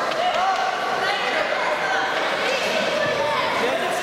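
Several people shouting and calling out at once, their voices overlapping and echoing in a large hall.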